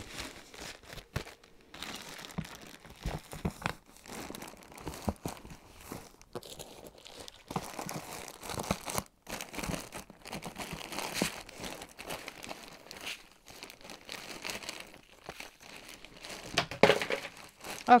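Clear plastic zip-lock bag crinkling and rustling in irregular bursts as it is handled.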